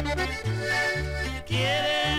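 Instrumental break of a 1972 norteño corrido: an accordion plays the melody over a bass line striking about two notes a second.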